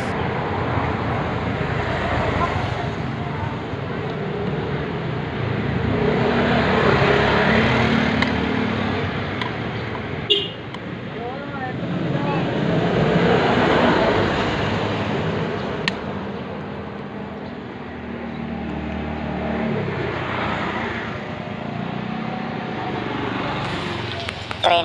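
Road traffic passing, its noise swelling and fading in several waves, with faint voices in the background and two sharp clicks, about ten and sixteen seconds in.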